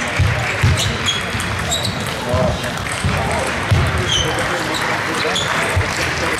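A table tennis rally: the celluloid ball is struck by bats and bounces on the table, giving a run of short, sharp clicks spaced irregularly a fraction of a second to a second apart.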